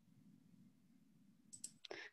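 Near silence, with a few faint short clicks near the end.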